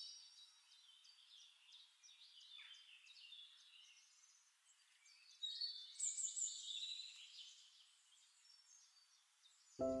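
Faint birdsong: several birds chirping and trilling in short high calls, with a louder run of calls about halfway through.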